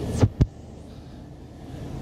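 Two dull thumps in quick succession just after the start, followed by a low steady hum.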